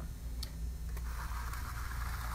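A metal trowel scraping across wet Venetian plaster, a steady scrape starting about a second in, after a couple of light ticks, over a low steady hum.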